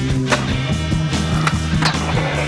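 Skateboard sounds mixed under rock music: two sharp board clacks, one about a third of a second in and another near the end, over the steady music bed.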